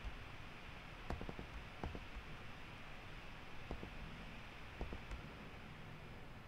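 Computer mouse clicking now and then, about five faint sharp clicks spread unevenly over low room hiss.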